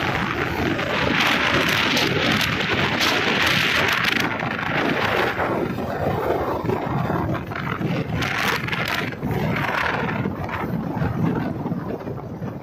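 Wind rushing over the microphone of a camera riding on a moving motorcycle, a loud noise that swells and eases in gusts.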